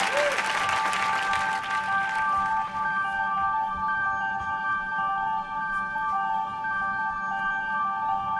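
Opening of a live band performance: studio audience applause dying away over the first couple of seconds, under steady, repeating keyboard notes that hold on through the rest.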